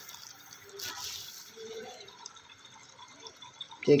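Newborn baby's faint sucking and wet mouth sounds, with a brief soft rustle about a second in.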